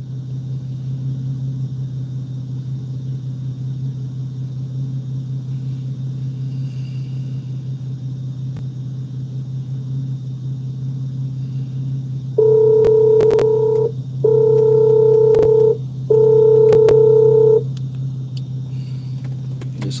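Steady low hum inside a car cabin, then three loud, long electronic beeps in a row, each about a second and a half with short gaps between them.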